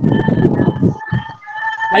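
A rooster crowing: one long drawn-out call held at a steady pitch, with a rough noise under it in the first half.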